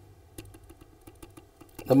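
Faint, quick clicks of a stylus tapping on a tablet screen as a dashed line is drawn.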